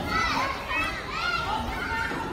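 Young children's high-pitched voices and calls at a busy playground, with several overlapping over a steady hum of background noise.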